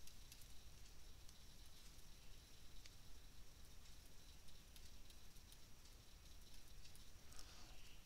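Near silence with faint room hiss and a few scattered light clicks, typical of a stylus tapping on a tablet while handwriting numbers.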